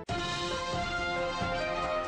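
News-bulletin theme music: a transition jingle of sustained chords that starts abruptly.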